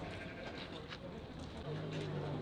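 Goats and sheep in a livestock truck bleating; a low, drawn-out bleat begins near the end.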